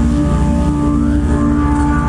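Live band playing a sustained, droning intro: held chords over a deep bass note, with no clear drum strikes.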